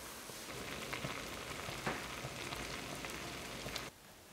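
Tapioca pearls boiling in a stainless steel saucepan on a gas hob: a steady bubbling hiss with many small pops. It stops suddenly just before the end.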